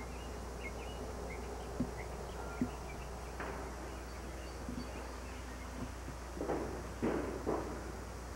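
Quiet outdoor background with a steady low hum, two small clicks and a few brief rustling noises, the loudest near the end.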